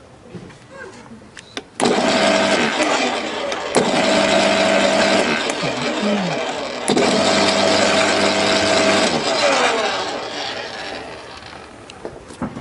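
Makita UD2500 electric garden shredder switched on with a click about two seconds in, its 2500 W motor and reduction gearing running with a loud steady whine. Midway the whine drops away and the machine starts again with another click, then near the end it is switched off and runs down.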